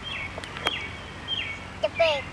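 A bird calling outdoors: a short, high, falling chirp repeated about every second and a half, with a sharp click about a third of the way in.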